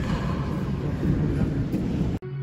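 Steady low rumbling background noise with no distinct single source.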